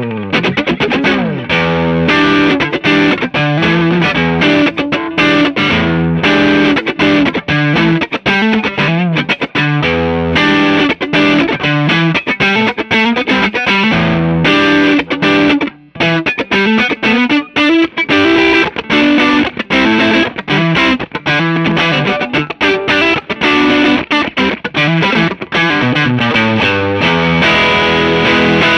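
Fender Custom Shop '60 Stratocaster played through a JAM Pedals TubeDreamer overdrive pedal into a Fender '65 Twin Reverb amp: a continuous run of overdriven riffs and chords, with one short break about halfway. The pedal's tone knob is turned up, giving the feel of an old vintage amp being driven.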